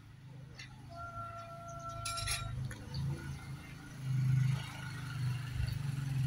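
Steel tie wire and rebar clinking as wire is twisted around the bars of a column cage, with a few sharp metallic clinks, the loudest about two seconds in. A low steady hum runs underneath.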